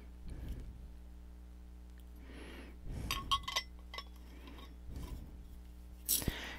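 Light clinks and taps from a crystal-infuser water bottle being handled. The loudest is a short cluster of ringing clinks about three seconds in, with softer handling sounds before it and a small knock near the end.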